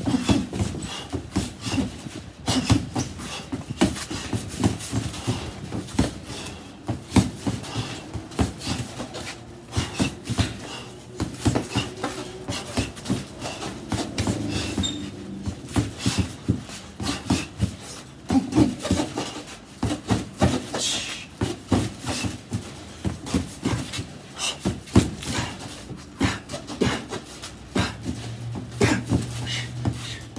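Boxing gloves punching a duct-taped heavy bag, a steady stream of impacts in quick, irregular bunches. Sharp exhaled breaths come out with the punches.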